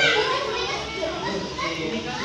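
Several children talking and calling out over one another in a room.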